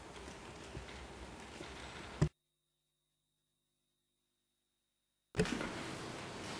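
Low hiss of an open microphone in a quiet room, broken by a sharp click a little over two seconds in; the sound then cuts out completely for about three seconds before the hiss comes back.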